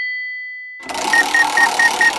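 A bell-like ding rings and fades, then about a second in a loud clatter starts, with a high beep pulsing about four times a second over it.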